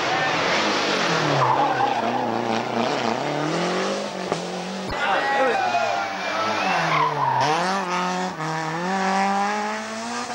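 Rally car engines revving hard as cars pass, the pitch climbing and dropping again and again as the drivers change gear and lift off.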